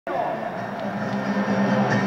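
A man singing a line of trova into a stage microphone, holding one note for over a second, with acoustic guitar accompaniment underneath.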